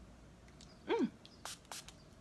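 A woman's short hum of approval, falling in pitch, about a second in, followed near the end by two quick hissing spritzes from a Gale Hayman Delicious body mist pump-spray bottle.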